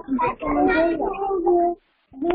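A woman's voice singing with long held notes, breaking off shortly before the end.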